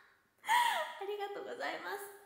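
A young woman's voice: after a brief silence, a loud high exclamation that falls in pitch about half a second in, then quieter talk.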